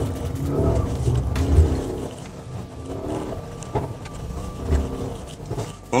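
The 5.5-litre twin-turbo V8 of a Mercedes-AMG GLS 63, heard from inside the cabin while the SUV is driven sideways with stability control off. It is loudest in the first two seconds, then quieter, with a couple of brief swells.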